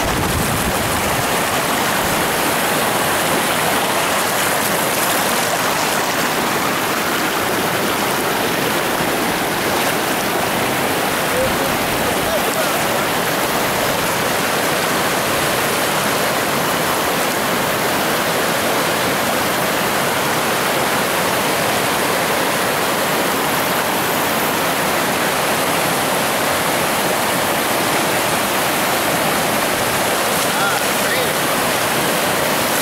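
Steady rushing of a shallow river over rock shoals, with whitewater pouring past an old concrete dam: an even, unbroken roar of moving water.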